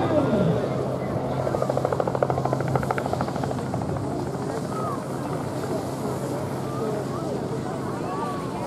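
Distant voices and calls of people outdoors over a steady low hum, with a rapid fluttering rattle from about one to three and a half seconds in.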